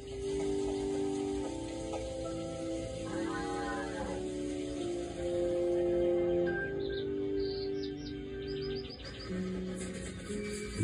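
Cartoon soundtrack music played through a TV's speakers, long held notes, with short bird chirps twice over it: once a few seconds in and as a quick run of high chirps later on.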